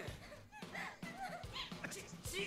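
Anime soundtrack playing at low level: short, high-pitched Japanese voice-acted exclamations over background music.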